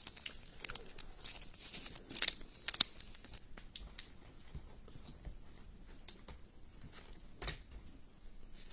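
Faint crinkling and rustling of a clear plastic card sleeve as a trading card is slid into it. A few sharp crackles come about two seconds in, and one more near the end.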